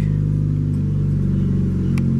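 1991 Lotus Elan's four-cylinder engine idling steadily through its aftermarket exhaust, heard from inside the cabin.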